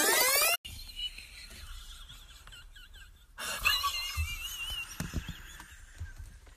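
A loud rising whoosh, like an edited-in transition effect, that cuts off abruptly about half a second in. It is followed by a faint, high-pitched, wavering squeal from a person, stronger in the second half.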